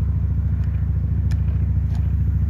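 Steady low rumble of an engine idling, with a couple of faint clicks.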